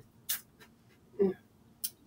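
A person eating a bite of baked, spiced popcorn: a short crisp bite or crunch, then an appreciative "mm" about a second in, and a small mouth click near the end.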